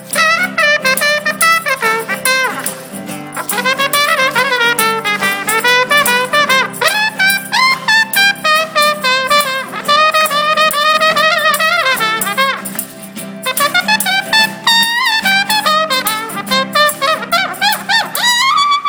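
Trumpet taking a solo in quick runs of notes over a live band's fiddle and acoustic guitar accompaniment. The phrases pause briefly about three and thirteen seconds in.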